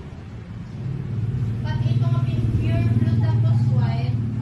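A motor engine running with a steady low rumble that grows louder about a second in, with people talking over it.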